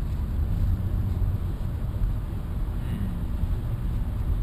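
Steady road and engine noise inside a moving car's cabin at highway speed: a continuous low rumble.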